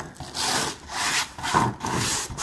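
Fingers raking and rubbing loose silicon carbide grit across a stone countertop: a gritty scraping in about four strokes, roughly two a second.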